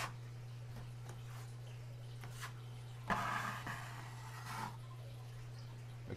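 Taping knife scraping joint compound over a wall patch, a soft scrape from about three seconds in lasting under two seconds, over a steady low hum.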